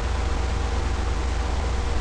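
Steady hiss with a low hum underneath: the background noise of the recording microphone, with nothing else happening.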